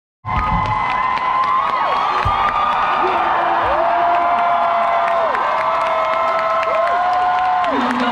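Concert audience cheering and screaming, with several long, high held screams that drop away at their ends. A singer's voice comes in over the crowd at the very end.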